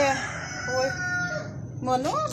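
A rooster crowing: one long call that slides up just before and then holds, falling slightly in pitch, for about a second and a half.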